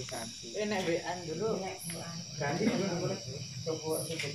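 Indistinct men's talk over a steady high trill of night insects, with a short, higher call recurring about every two seconds.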